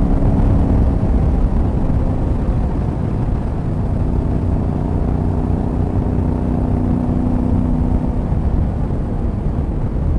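Yamaha Ténéré 700's 689 cc parallel-twin engine running at steady road speed, its note dipping slightly about three seconds in and then holding, under heavy wind rumble on the microphone.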